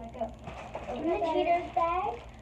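A girl's voice, talking indistinctly.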